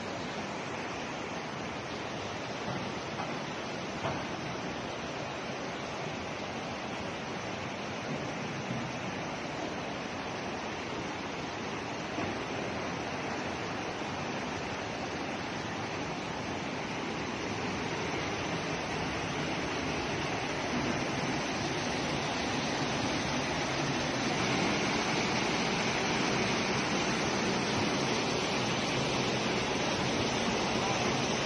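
Steady rush of muddy floodwater flowing through the street, a continuous even noise that grows a little louder in the last third, with a few faint knocks.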